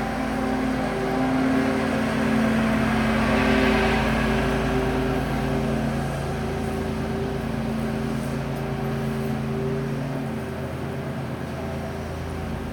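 Lawn mower engine running with a steady hum as a yard is cut, growing a little louder a few seconds in and easing off near the end.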